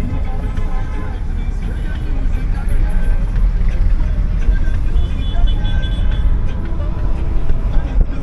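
A car driving through town, heard from inside the cabin: a loud, steady low rumble of road and engine noise. Music and voices are faint underneath.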